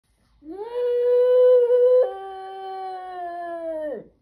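French bulldog howling: one long howl that rises at the start, holds steady, breaks to a lower pitch about halfway through and is quieter after the break, then drops away and stops near the end.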